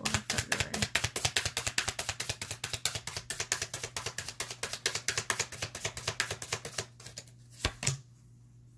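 A tarot deck being shuffled by hand: rapid, even card slaps at about ten a second that stop about seven seconds in, followed by two single taps near the end.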